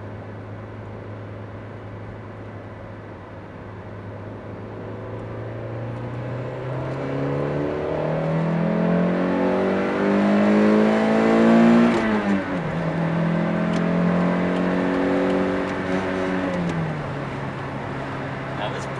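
Toyota 4A-GE twin-cam four-cylinder engine of a 1989 MR2 pulling hard under full throttle through a new stock-replacement exhaust, heard from inside the cabin. The revs climb steadily as the T-VIS intake valves open partway up the range, then drop sharply with an upshift about twelve seconds in. They climb again and settle back to a steady lower drone near the end.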